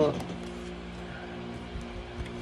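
Quiet background music with a steady low drone, with a few light clicks of cards being handled.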